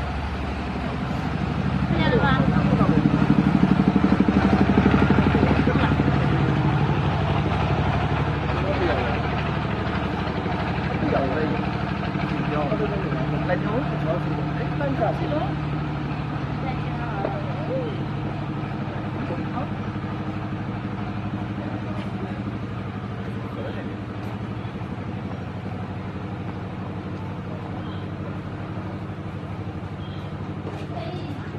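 A motor vehicle's engine running with a steady low hum, growing louder about two seconds in and then slowly fading, with indistinct voices over it.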